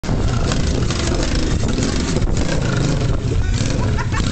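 Motorcycle-based trike's engine running loudly and steadily as it rides forward under power.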